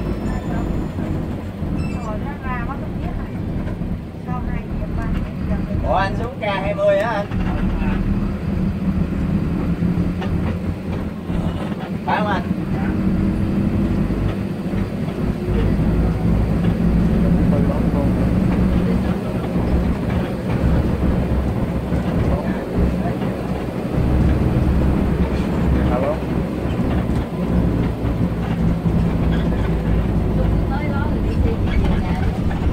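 Steady low rumble of engine and road noise heard inside the cabin of a moving coach bus. A few brief wavering higher-pitched sounds rise above it, the clearest about six to seven seconds in and again around twelve seconds.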